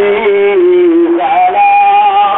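A solo voice singing a slow devotional melody on long held notes, stepping down in pitch through the first second and then jumping up to a higher held note about halfway through.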